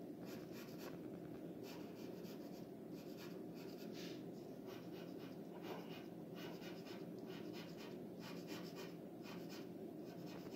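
Pencil scratching on drawing paper in repeated bursts of quick short strokes, each burst about half a second to a second long with brief pauses between, over a steady low hum.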